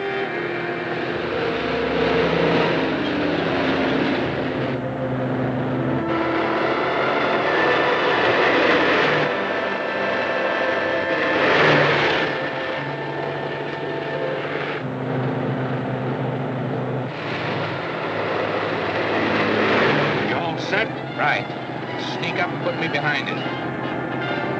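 A car driving fast, its engine and road noise under a dramatic orchestral score of held notes that change in steps. A few sharp cracks come near the end.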